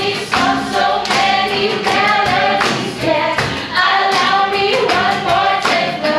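Worship singers, two women and a man, singing a praise song together through microphones, accompanied by acoustic guitar.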